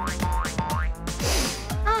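Bouncy comic background music built on a quick run of repeated falling 'boing'-like glides over a steady beat, with a short swishing rush of noise about a second and a half in.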